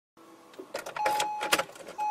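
Electronic start-up sound effect: a run of sharp clicks, with a steady high tone coming in about a second in.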